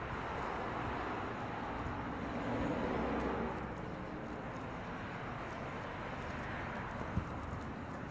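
Steady outdoor street noise of nearby road traffic, swelling a little about three seconds in.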